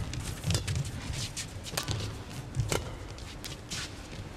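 Badminton racket strikes on a shuttlecock in a fast doubles rally: sharp, short hits roughly once a second, with the players' footsteps thudding on the court between them.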